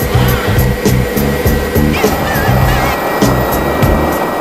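Background music with a steady beat over the steady noise of a helicopter's engine and rotor, heard from inside the cabin.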